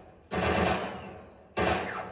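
Two AK-style rifle shots from a TV drama's soundtrack, played through a television's speakers. They come a little over a second apart, each ringing out for about a second.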